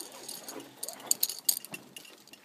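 Metal clicking and clinking of zipline gear, the carabiners and trolley on the steel cable, as a rider is caught at the platform, with two sharper clicks in the second half.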